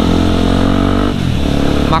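Yamaha WR155R's single-cylinder engine running under way; its note holds steady, then drops in pitch about a second in.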